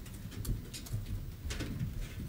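Church room noise as people move about after children are dismissed: a low rumble with scattered clicks, knocks and short rustles from footsteps, seats and clothing.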